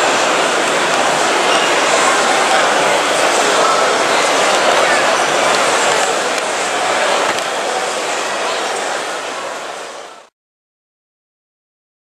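Crowd chatter in a large exhibition hall: many voices blending into a steady hubbub, which fades and cuts off to silence about ten seconds in.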